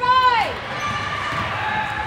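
Gym crowd reacting to a basket: a loud high-pitched cheer for about half a second that falls off at the end, then softer voices and court noise.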